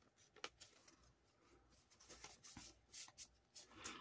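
Faint paper rustling with a few light taps and clicks, mostly in the second half: paper dollar bills being slipped into a paper cash envelope and handled on the table.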